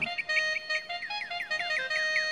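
Orchestral film music: a high woodwind plays quick, short falling chirps, about five a second, imitating a small bird's twitter over held notes.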